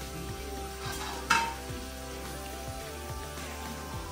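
Samosas frying in hot oil in a small pan, sizzling steadily, with a sharp metallic clink of tongs against the pan about a second and a half in.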